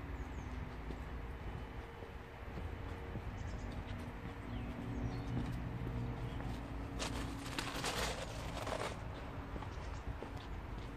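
Footsteps walking on a driveway over a steady low hum, with a rushing hiss lasting about two seconds near the end.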